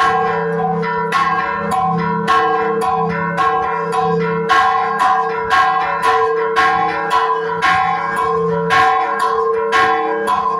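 Church bells rung by hand in a Mexican repique, their clappers pulled on ropes so the bells strike in quick succession, about three strikes a second at several pitches, each one ringing on under the next. A deeper bell sounds beneath the quicker, higher strikes.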